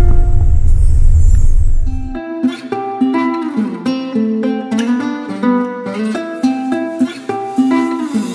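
Low rumble of a bus cabin under background music for about two seconds, cutting off abruptly; then a plucked-string melody on guitar or ukulele plays on its own.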